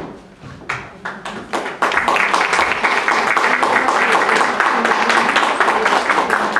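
Audience applauding: a few scattered claps at first, then steady, dense applause from about two seconds in.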